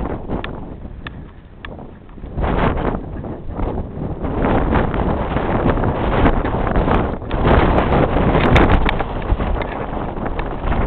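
Wind buffeting the microphone in gusts, easing for a moment about a second in and then building again.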